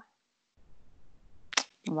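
A short pause in a conversation: near silence, then a short sharp noise about one and a half seconds in and a fainter one just after, as a woman starts to speak again.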